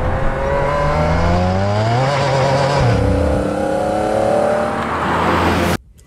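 Car engine revving: the note rises over the first two seconds, holds, then drops back about three seconds in, and the sound cuts off suddenly near the end.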